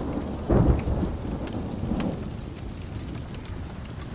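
Thunderstorm: steady rain with low rolling thunder. The loudest roll comes about half a second in and a weaker one about two seconds in.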